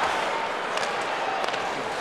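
Ice hockey arena sound: steady crowd noise with a few sharp clicks of sticks and puck on the ice.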